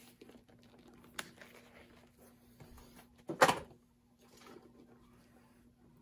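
Shoes being handled on a workbench: a light click about a second in, then one short, louder knock about three and a half seconds in, over a faint steady hum.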